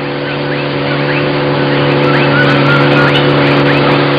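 Outboard motor on a long wooden river canoe running at a steady high speed, its drone growing slightly louder over the few seconds.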